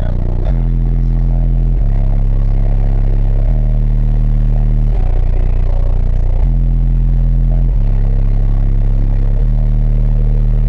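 Bass-heavy music played very loud through a truck's competition system of eight Pure Audio 12-inch subwoofers on four American Bass amplifiers, loud enough to flex the roof. Long, deep held bass notes step to a new pitch about every one and a half seconds.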